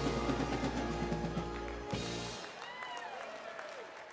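Live band music with drum kit and steady bass, ending on a final hit about two seconds in; the tail that follows, with applause and a voice calling out, fades away.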